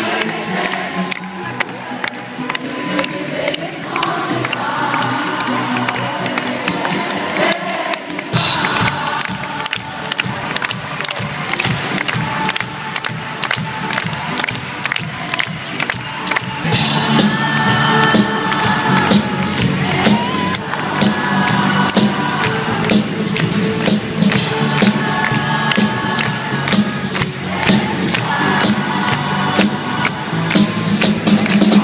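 Live band music in a concert arena, heard from among the audience, with the crowd cheering and clapping. The music is soft at first, and the band comes in fuller and louder about halfway through.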